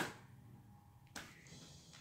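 Faint clicks of a plastic CD jewel case being handled: one sharp click right at the start and a softer one about a second in, with quiet room tone between.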